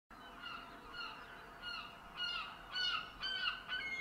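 A bird calling over and over, short honk-like calls about twice a second that grow louder toward the end.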